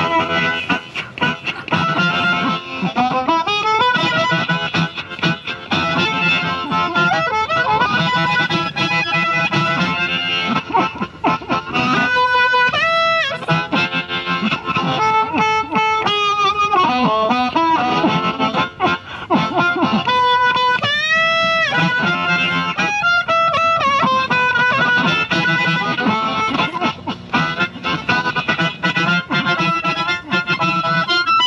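Amplified blues harmonica played through a Harp Blaster HB52 harmonica microphone cupped around the harp and into a small amp, giving a compressed breakup tone. It alternates choppy rhythmic passages with long held notes that bend and waver in pitch, notably about twelve and twenty-one seconds in.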